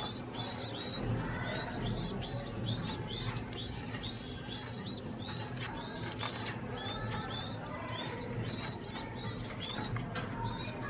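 Young pigeon squabs give high, short begging cheeps in a quick steady run, about three a second, while a parent pigeon feeds them crop milk beak-to-beak.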